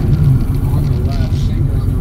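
Air-cooled flat-six of a 1988 Porsche 911 Carrera 3.2 idling steadily, heard from inside the cabin.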